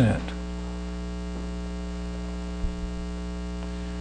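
Steady electrical mains hum in the recording: a low, buzzy drone made of many evenly spaced overtones. A faint low bump comes about two and a half seconds in.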